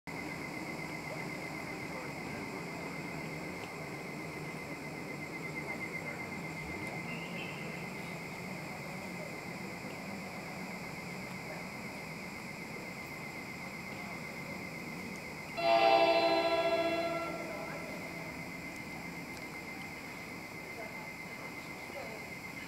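An approaching NJ Transit ALP-46A electric locomotive sounds one horn blast of about a second and a half, a loud chord of several tones, roughly three-quarters of the way in. Beneath it runs a steady high-pitched buzz.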